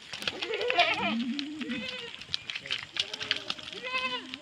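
A herd of goats bleating, several wavering calls overlapping one after another, with scattered short clicks among them.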